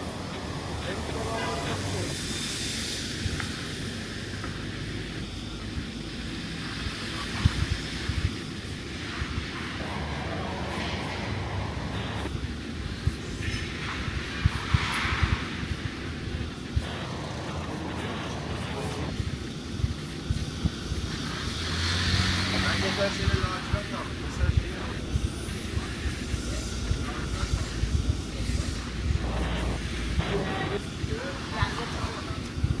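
Busy city street ambience: a steady traffic rumble with passers-by talking, and a louder swell of vehicle noise a little past two-thirds of the way through.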